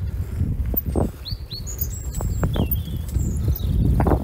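Small birds chirping, a string of short high calls through the middle, over a low rumble of wind on the microphone and footsteps on a gravel towpath.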